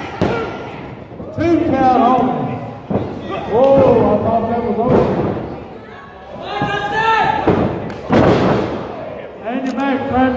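Wrestlers' bodies slamming onto a ring mat: a sharp thud right at the start and a few more impacts later, among people's shouting voices.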